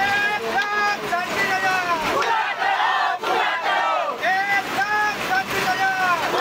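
A group of mostly women's voices chanting loudly together in a crowded bus. The same high, rising-and-falling call repeats about every half second.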